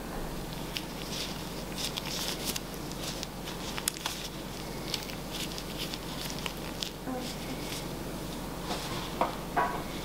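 Small scattered clicks and rustles of nitrile-gloved hands flexing and peeling a silicone mold off set cold process soap embeds, over a low steady room hum.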